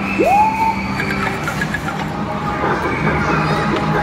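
Amusement arcade din: game machines' electronic jingles and music over crowd chatter and children's shouts, with one tone sliding up and holding just after the start.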